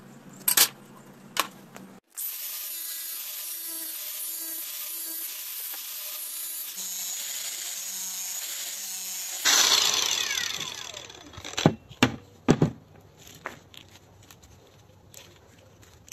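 Angle grinder with a thin cutting disc running steadily as it cuts through a plastic pipe, then switched off and winding down with a falling whine. A few loud knocks follow as the cut pipe is handled, and two sharp clicks come at the start.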